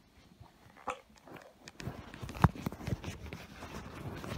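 Handling noise from a hand-held camera phone being moved and set down on a table: a short run of light knocks and clicks after a quiet start, the sharpest about two and a half seconds in.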